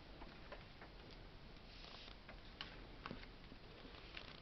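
Near silence, with a few faint, light ticks from paper cut-out cards being handled on a table.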